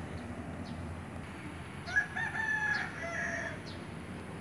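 A rooster crowing once, a drawn-out call lasting about a second and a half that starts about halfway through, over a steady low background noise.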